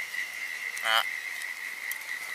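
Steady high-pitched insect trill, with a short spoken "ah" about a second in.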